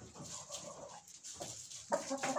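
Soft, faint vocalising of black-copper Marans hens, with a sharper sound just before the end.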